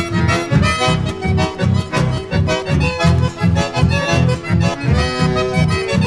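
Chamamé music, an instrumental passage: an accordion plays the melody over a steady, evenly pulsing bass.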